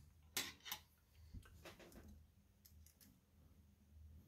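Light clicks of a thin brass rod and small steel jeweler's pliers being handled on a tabletop: two sharp clicks close together in the first second, then a few faint ticks, otherwise near silence.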